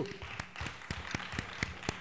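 Audience applauding, with separate claps standing out about four times a second.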